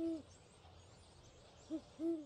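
An owl hooting: a hoot at the start, then a brief one and another full hoot near the end, each rising and falling in pitch, over a faint steady hiss of outdoor night ambience.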